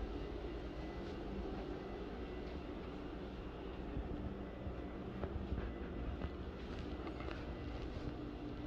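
Ceiling fan running: a steady low motor hum with the whoosh of the spinning blades.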